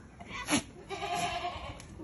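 Kota buck goat giving a short bleat about a second in, preceded by a sharp click.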